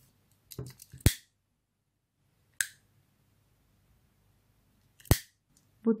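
A few separate sharp clicks while a ribbon end is cut and singed: a short cluster about a second in, a single click in the middle and another sharp click near the end. They come from scissors snipping the ribbon and a lighter being struck to melt the cut end.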